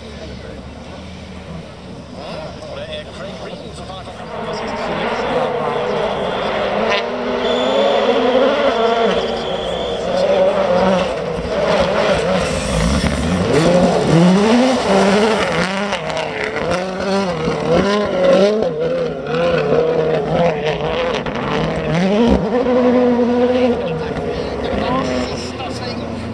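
A 2017 World Rally Car's turbocharged 1.6-litre four-cylinder engine revving hard past the spectators, its pitch climbing and dropping again and again as the driver accelerates and lifts. It gets louder about four seconds in.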